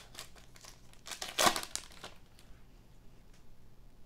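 Foil wrapper of a trading-card pack being torn open and crinkled in the hands, the crackling busiest in the first two seconds with the loudest rip about a second and a half in, then dying down to faint handling of the cards.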